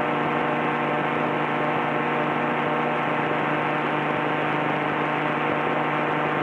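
A steady electrical hum and buzz on the helicopter's intercom audio: one unchanging low tone with many overtones. The crew put it down to interference coming from the radio.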